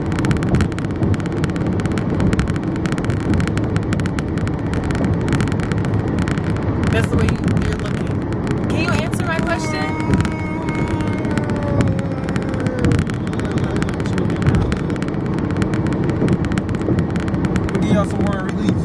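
Steady road noise inside a moving car's cabin with voices over it. About nine seconds in, a man lets out a long shout that slides down in pitch over a few seconds.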